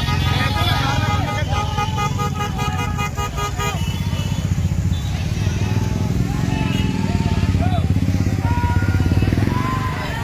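A crowd of motorcycles moving together, engines running and honking, with many people shouting over them; the shouting and honking are thickest in the first few seconds.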